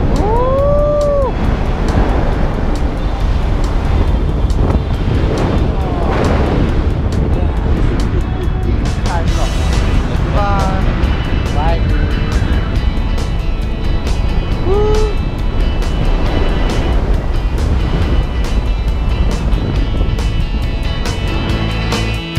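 Steady rush of wind on the microphone during a tandem skydive, under background music, with a few short whooping yells that rise and fall in pitch, one right at the start and others around the middle.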